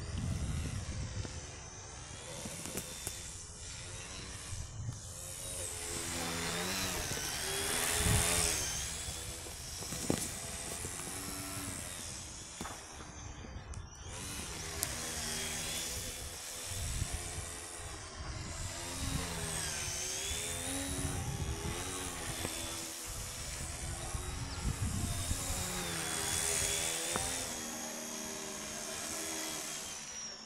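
Radio-controlled model biplane's motor and propeller whining as it flies, rising and falling in pitch and loudness as it passes back and forth overhead, loudest twice as it comes close.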